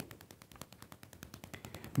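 A faint, rapid, uneven run of clicks, several a second.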